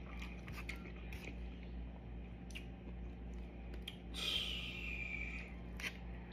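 A person chewing a mouthful of creamy pasta, with small clicks of a metal fork against the plate. A louder hissing sound about four seconds in lasts over a second and drifts slightly lower. A steady low hum runs underneath.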